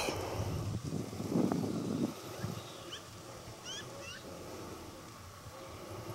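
A few faint, short bird chirps that quickly rise and fall, heard in the middle of the stretch over a quiet outdoor background, with a brief, louder unclear sound about a second and a half in.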